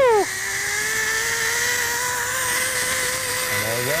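A zip line trolley's pulleys running fast along the steel cable: a steady whine that rises slightly in pitch during the first second and then holds, under a hiss of rushing air. A rider's drawn-out shout breaks off right at the start.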